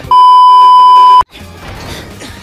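Television colour-bar test tone: one loud, steady, high beep lasting about a second that cuts off suddenly, followed by the cartoon's soundtrack music.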